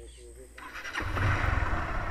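Motorcycle engine starting up about a second in and then running steadily.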